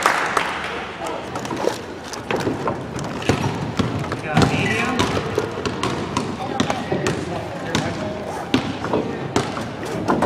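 Basketballs bouncing irregularly on a gymnasium's wooden floor, a scatter of sharp thuds, over the steady background chatter of children.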